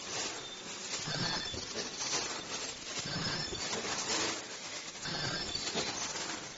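KN95 mask production machine running, with a repeating mechanical cycle about every two seconds over steady machine noise.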